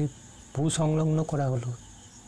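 A voice speaking for about a second in the middle, over a faint, steady high-pitched whine in the background.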